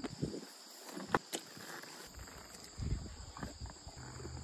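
Faint rustling, soft thumps and a couple of sharp clicks of tack being handled as a horse is saddled and mounted in grass.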